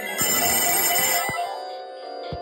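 Electronic telephone ringtone: a bright, trilling burst of ringing that lasts about a second. A sharp click follows just after it stops.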